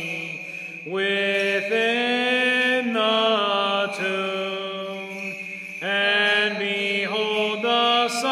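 Slow liturgical chant of the Byzantine rite, sung in long held notes that step up and down from one to the next. It breaks off briefly near the start and again a little past halfway.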